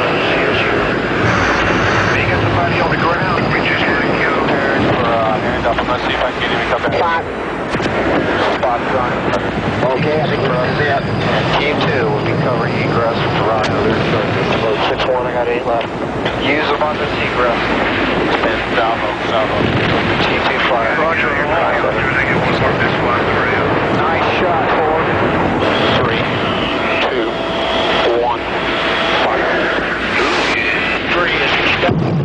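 Steady AH-64 Apache helicopter engine and rotor noise heard from the cockpit, with crew voices talking over the radio intercom during a target run.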